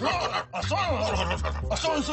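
Men snickering and chuckling over background music with a steady bass line.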